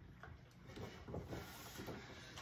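Faint handling noise of plastic wrestling action figures being moved about a toy ring, with a few light knocks.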